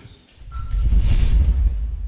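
A low rumbling whoosh, a broadcast transition sound effect, swelling in about half a second in with a faint hiss over its middle.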